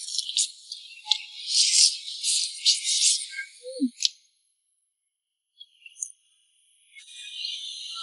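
Mouth sounds of a person sucking and chewing a raw shrimp: thin, crackly and high-pitched with no low end. The sound cuts out about four seconds in and a faint hiss returns near the end.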